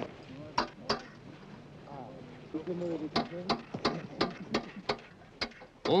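Indistinct voices with a scattered series of sharp clicks and knocks; the two loudest knocks come under a second in.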